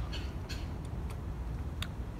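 A few faint wet clicks and smacks of a mouth biting into and chewing a mango slice, over a steady low background rumble.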